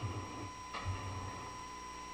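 Quiet room tone picked up by the public-comment microphone during a pause in speech: low steady background noise with a faint steady whine, and a brief soft sound a little under a second in.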